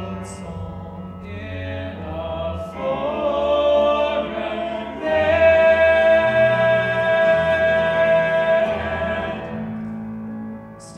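Stage musical cast singing together in harmony, swelling into a long held note about halfway through that fades out near the end.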